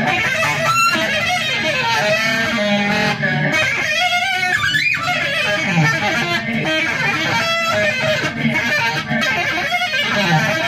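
Saxophone run through effects pedals, a dense, continuous layered wash of many overlapping pitches that shift and bend.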